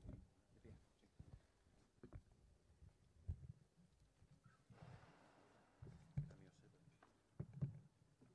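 Near silence broken by a few faint low knocks and a brief rustle: handling noise as a microphone stand is set up in front of an acoustic guitar.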